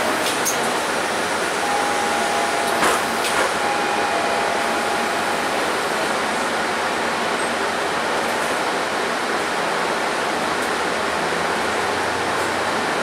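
Steady interior noise of a Mercedes-Benz Citaro bus pulling away from a stop, an even hiss with no clear engine note. A sharp knock comes about three seconds in, and a faint steady tone sounds twice around it.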